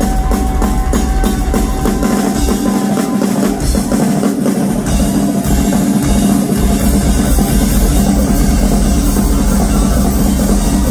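Live rock drum kit solo, amplified: rapid, dense hits across drums and cymbals. A steady high tone is held under the first three seconds, and the deep bass-drum low end drops out for a few seconds in the middle before coming back.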